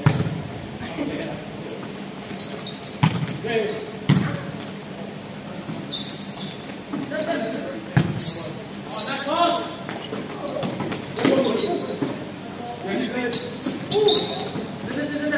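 A volleyball being struck by players' hands and arms during a rally: about five sharp slaps, the loudest at the start and the others about 3, 4 and 8 seconds in and at the end. The hits ring in a large sports hall, with players' shouts between them.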